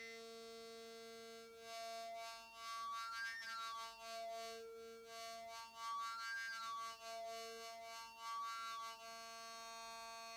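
Hard-synced oscillator of Rob Hordijk's Sync OSC module, holding a steady pitch while a bright overtone peak is swept up and down through the harmonics twice, giving a flanging-like sync sweep. The module's flank-suppression circuit keeps it very pure and much cleaner than a traditional hard-sync sound.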